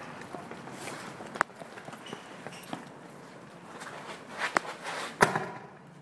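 Footsteps on pavement of a person running from a lit firecracker, with a few sharp clicks, the loudest about five seconds in.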